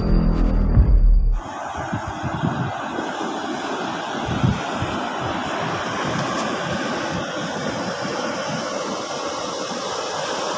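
A music jingle stops abruptly about a second and a half in, followed by a steady wash of sea surf and wind noise on the microphone.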